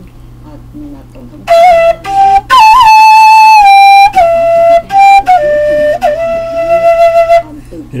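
PVC transverse flute playing a short phrase of about nine notes in its upper octave, blown harder to overblow: la, do, re, do, la, do, son, la, ending on a longer held note. The playing starts about a second and a half in.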